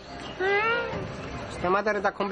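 A drawn-out pitched cry that rises and then falls, followed near the end by a quick run of short, wavering cries.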